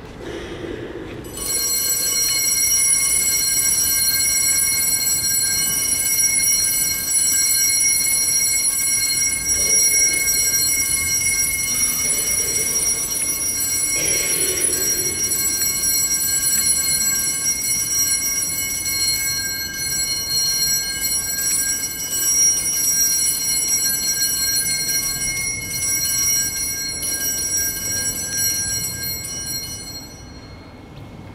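Altar bells rung without a break in a steady, high, metallic ringing while the Blessed Sacrament is raised in blessing. The ringing starts about a second and a half in.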